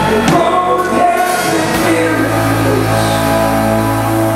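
Live band music with a singer: a wavering sung line over guitar-led backing, then a held chord from about halfway through.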